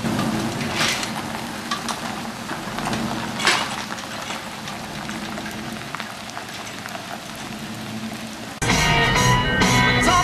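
Van engine running as it tows an empty boat trailer away, with a low steady hum under a noisy hiss and a few sharp knocks. About eight and a half seconds in it cuts abruptly to louder music with singing.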